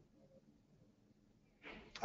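Near silence: faint room tone, with a brief soft rush of noise near the end.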